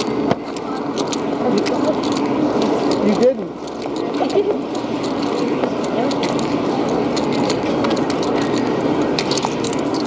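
Indistinct voices over a steady outdoor hubbub, with many small clicks and knocks scattered throughout.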